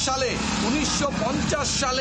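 A man speaking, most likely in Bengali, over a steady bed of background noise.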